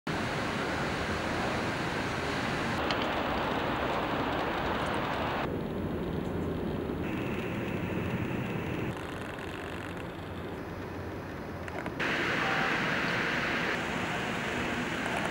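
Steady background rushing noise with no voices, changing abruptly in level and tone several times as one ambient recording cuts to the next.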